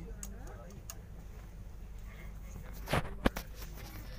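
Steady low hum inside an LHB AC chair car coach, with two sharp clicks close together about three seconds in.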